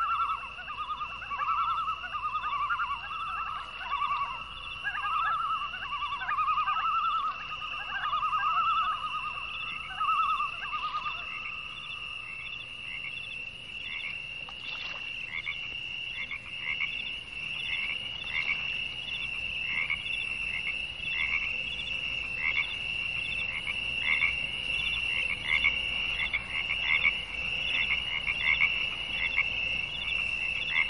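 A chorus of animal calls: a steady high-pitched pulsing trill throughout, joined by a lower pulsing call in repeated short bursts that stops about a third of the way in.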